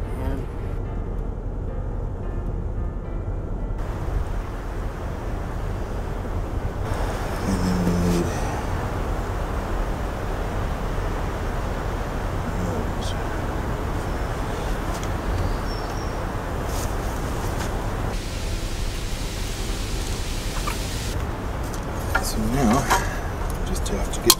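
Steady low road and engine noise from inside a moving car, changing character abruptly a few times, with a few faint clicks.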